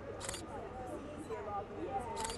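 A camera shutter firing once, a short bright click-clack about a quarter of a second in, over the murmur of passers-by talking in the street.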